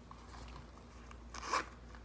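A small jewelry box being handled and opened by hand, with one short rustling scrape about one and a half seconds in over low room noise.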